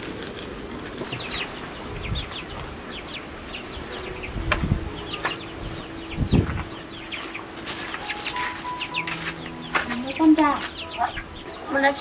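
Chickens clucking, with many short high chirps scattered throughout and a few low thumps.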